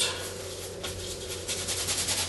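Bristle brush scrubbing oil paint onto canvas in short back-and-forth strokes, scattered at first, then a fast, even rasping rhythm of about eight strokes a second from about one and a half seconds in.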